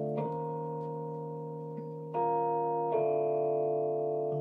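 Deep house track in a beatless breakdown: sustained keyboard chords with no drums, moving to a new chord about two seconds in and again just before three seconds.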